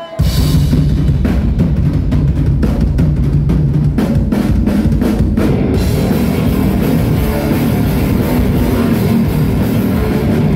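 Thrash metal band playing live as a new song kicks in: distorted guitars and bass over a run of sharp, evenly spaced drum hits. About six seconds in the sound fills out into a denser wash of cymbals and full band.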